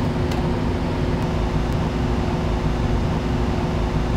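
Biosafety cabinet blower running: a steady rush of air with a low, even hum, and a couple of faint clicks.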